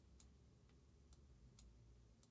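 Near silence: faint room tone with light, evenly spaced ticks, about two a second.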